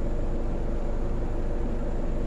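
Steady hum inside a car's cabin from the car running, with its engine and fan noise even and unchanging.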